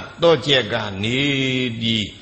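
A monk's voice intoning a passage from a book in a chant-like cadence. It opens with a few short syllables, then draws out one long syllable whose pitch dips and rises again.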